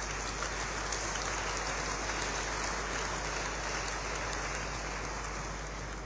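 Audience applauding steadily in a large hall.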